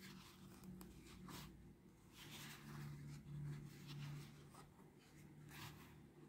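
Faint, light scratching and rustling of a crochet hook and wool yarn being worked stitch by stitch along the edge of an EVA foam sole, with a faint low hum in the middle.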